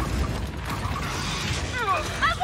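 Mechanical sound effects of a powered mech suit moving: creaking, ratcheting joints and servos, with a few quick falling squeals near the end.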